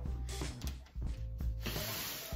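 A Maxpedition backpack sliding and rubbing across a wooden tabletop as it is turned, in two short spells, the second near the end, over background music.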